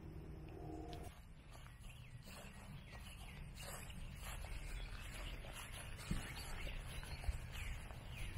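Birds calling outdoors: many short chirps and calls, growing busier toward the end, over a steady low rumble.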